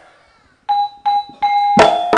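Gamelan metallophone struck three times on the same note, about a third of a second apart, each note ringing briefly. Near the end louder strikes on several notes come in together as the gamelan ensemble starts to play.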